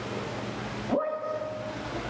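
A breathy hiss, then a person's voice scooping up into one high, drawn-out note held for about a second, with no words.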